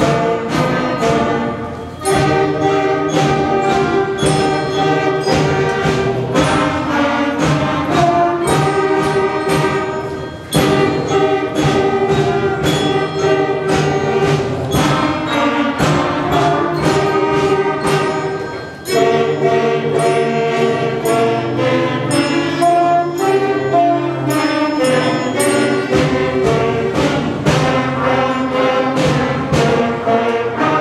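A sixth-grade concert band of brass and woodwinds playing a Christmas piece in held chords, breaking briefly between phrases three times.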